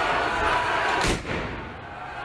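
Shouting of a brawling street crowd, cut by a single sharp bang about a second in; the crowd noise falls away right after the bang.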